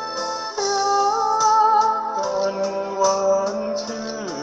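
A voice singing through a microphone over a karaoke backing track, holding long notes that waver with vibrato from about half a second in.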